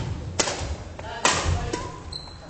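Badminton rally in a gym: sharp smacks of rackets on the shuttlecock mixed with players' footfalls on the wooden floor. Two loud hits come about a second apart, with lighter knocks between, echoing in the hall.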